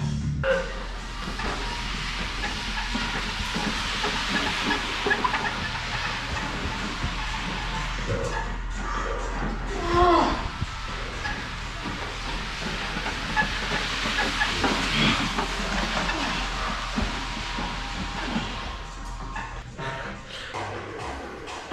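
Weighted push sled sliding across artificial turf, a steady scraping hiss that swells about halfway through, over background music.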